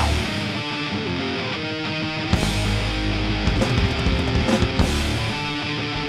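Heavy metal band playing live: drums with cymbal crashes about two seconds in and again a few seconds later, under held, ringing electric guitar notes.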